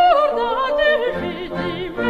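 Operatic singing in an 18th-century opera buffa: voices with wide vibrato over sustained orchestral chords.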